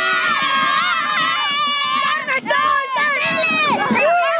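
A crowd of children shouting and cheering close by, many high voices overlapping at once, with a short dip in the din about halfway through.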